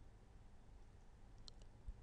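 Near silence: room tone, with a couple of faint short clicks about one and a half seconds in.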